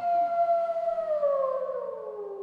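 The closing note of a post-hardcore song: a single held tone that slides slowly down in pitch and fades out.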